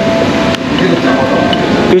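A man chewing a mouthful of hamburger with short hummed 'mmm' sounds, over the steady background hum of a large airport terminal.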